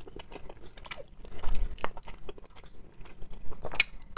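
Close-up chewing and mouth sounds of someone eating, with irregular small smacks and a couple of sharper clicks of a metal fork against the dishes, about two seconds in and near the end.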